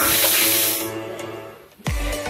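Background music with steady tones, over which a loud hiss starts suddenly, then fades over about a second; a sudden low thud comes near the end.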